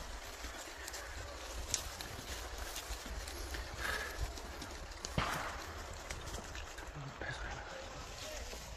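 Macaques picking strawberries out of a plastic basin: scattered light clicks and rustles over a low steady rumble, with a couple of brief faint calls.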